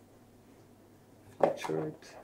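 Quiet room tone, then about one and a half seconds in a single sharp tap on a laptop keyboard, followed at once by a short spoken "uh".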